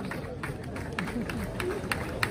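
Outdoor crowd murmuring, with scattered hand claps that come more often toward the end.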